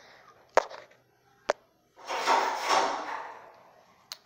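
Handling noise on a phone camera: two sharp clicks a little under a second apart, then a rushing rustle of about a second and a half that fades away.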